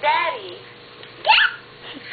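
A toddler's high-pitched wordless vocal sounds: a short sliding cry at the start, then a quick upward squeal a little past halfway.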